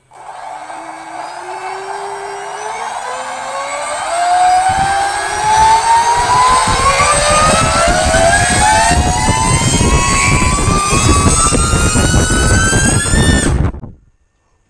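Twin electric motors of a Radjet Ultra RC jet drive on a 6S battery run up under slowly opened throttle. Their whine rises steadily in pitch and grows louder for about thirteen seconds, with a rushing noise building from about four seconds in, then cuts off suddenly just before the end.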